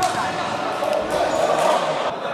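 Futsal ball struck and bouncing on a hard indoor court, with players' shouts in the sports hall.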